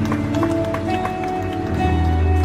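Instrumental hymn music: slow sustained chords under a melody that steps up by a couple of notes.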